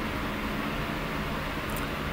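Steady room ventilation noise: an even hiss with a low hum underneath, unchanging throughout.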